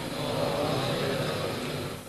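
Steady background noise with faint murmuring voices underneath.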